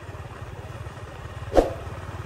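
Small motorbike engine running steadily at low speed as it rides along, with a brief sharp sound about one and a half seconds in.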